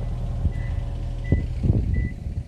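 A heavy vehicle's engine running with a steady low rumble while its reversing alarm sounds short, high single-pitched beeps. A few short scrapes come near the end.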